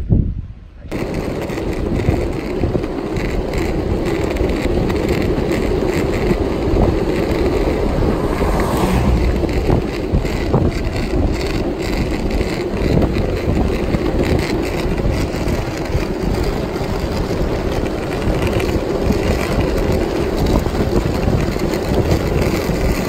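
Longboard wheels rolling steadily over asphalt, a continuous rumble that starts about a second in.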